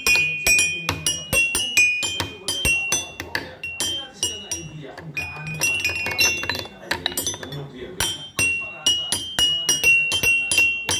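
Child's toy xylophone with metal keys struck rapidly and unevenly with wooden mallets: random bright, ringing notes, several strikes a second, with no tune, and a brief pause about halfway through.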